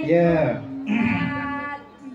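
A woman's voice over a microphone and PA system, speaking with a strongly rising and falling pitch, fading out near the end.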